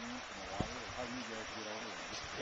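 Steady rush of a creek running high after rain, heard as an even wash of water noise, with one brief click about half a second in.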